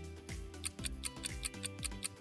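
Background music with a bass line and a fast, even ticking beat that comes in about half a second in, the kind of countdown-timer track laid under a quiz question.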